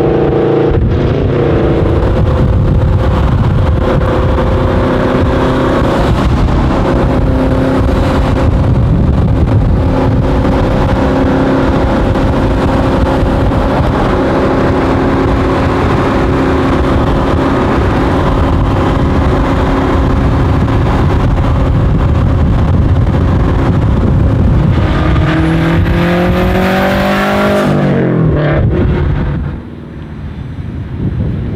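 Subaru WRX STI's turbocharged flat-four engine running at a steady engine speed. About 25 seconds in it revs up with a rising high whistle, then falls away sharply off the throttle near the end.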